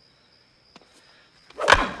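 Film soundtrack of a night ball field: crickets chirping in a steady high trill, a sharp crack of a bat hitting a pitched baseball about a second in, then a man shouting "Whoa!" loudly near the end as the ball comes back at him.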